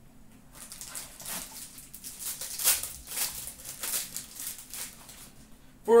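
Cardboard and trading cards being handled: a small trading-card pack box is opened and a card is slid out, giving a string of irregular rustles and scrapes that starts about half a second in.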